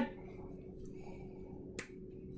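Quiet room with a low steady hum, and one sharp click near the end from a coloring pencil or marker being handled at a desk.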